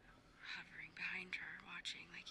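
Faint, soft-spoken dialogue: a woman speaking quietly, almost in a whisper.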